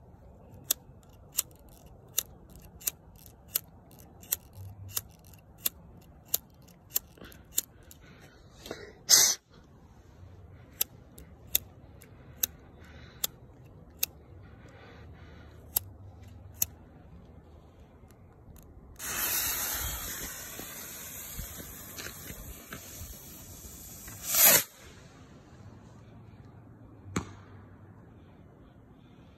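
A homemade bottle rocket's black-powder motor hissing loudly for about five seconds as it flies, ending in one sharp bang as its head bursts to release green stars. Before that, a run of evenly spaced clicks, about one every 0.7 seconds, then scattered clicks.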